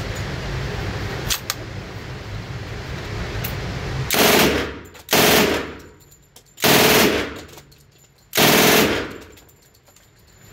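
Cobray Ingram MAC-10 submachine gun in .45 ACP firing four short full-auto bursts, each about half a second long, starting about four seconds in. Each burst is followed by a brief echo.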